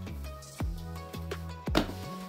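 Background music with a steady bass line and deep drum hits that drop in pitch, about two a second.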